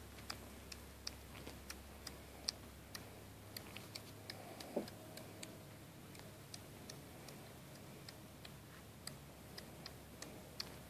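Faint, irregular little clicks, a few a second, from a chipmunk cracking and chewing seeds, with one slightly louder click about halfway through.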